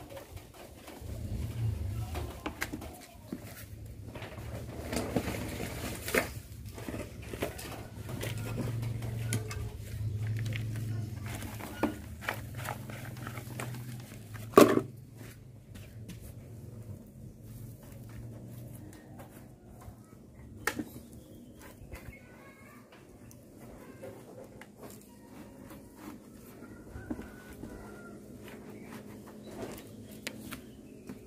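Hands pressing and smoothing loose potting mix in a plastic plant pot: soil rustling and patting, with scattered light knocks against the pot and one sharp knock about halfway through. The sound is busier in the first half and quieter afterwards.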